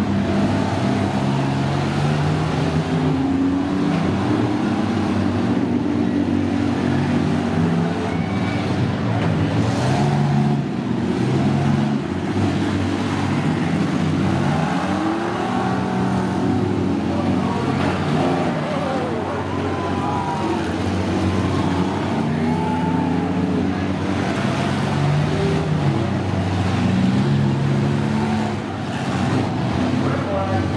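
Several demolition-derby vans' engines running hard and revving, their pitch stepping up and down as the drivers accelerate and back off.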